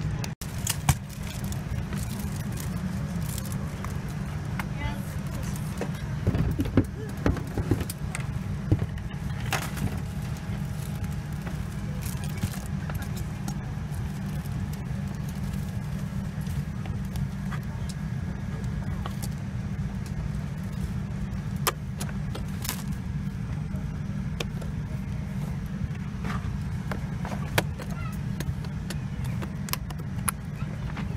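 Steady low rumble of an airliner cabin inside a Boeing 787-9, with scattered sharp clicks and knocks of things being handled close by.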